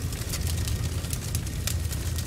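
Large fire burning on a film soundtrack: a steady low rumble of flames with faint scattered crackles.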